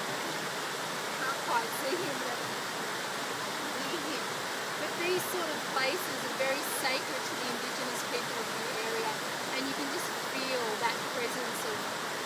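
Steady, even rush of water from a small waterfall and cascades running over smooth rock.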